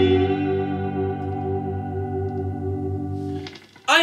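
Squier Telecaster electric guitar: a final chord left ringing with a slow, even waver in its level, then stopped short about three and a half seconds in.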